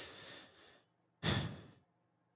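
A person sighing into the microphone with two heavy breaths out. The second, about a second in, is the louder.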